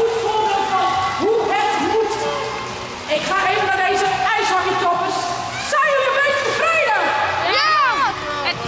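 Children's high-pitched voices shouting and chattering over one another, with a burst of excited shouts near the end.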